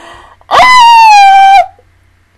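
A woman's high-pitched squeal, one held note about a second long starting about half a second in, its pitch sagging slightly before cutting off.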